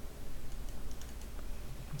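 Faint, scattered clicks of a computer keyboard and mouse over a low room hum.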